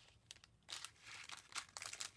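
Small plastic bag crinkling faintly as it is handled, starting about half a second in.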